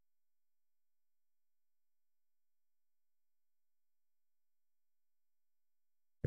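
Near silence: a gap with no audible sound.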